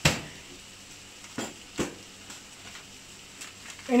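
A sharp knock at the start, then two lighter clicks about a second and a half in: kitchen handling noises, over a faint steady hiss from the masala in the pan.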